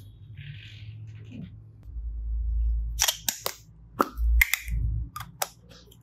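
Hollow plastic toy eggs clicking and clattering against each other as they are handled, with a run of sharp clicks from about three seconds in and low handling thumps among them.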